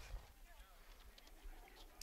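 Near silence: faint outdoor field ambience with distant voices.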